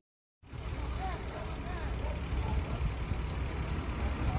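Steady low rumble of idling truck engines, with faint indistinct voices; it starts after a short silence at the very beginning.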